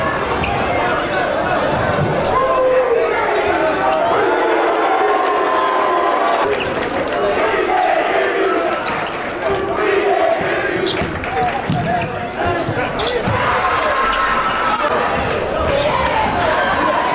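A basketball game in a gym: the ball bouncing on the hardwood court now and then, over steady chatter and shouting from the crowd, in a hall that echoes.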